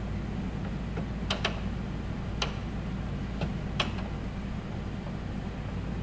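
About six short, light clicks, scattered unevenly and a pair close together just after a second in, over a steady low hum.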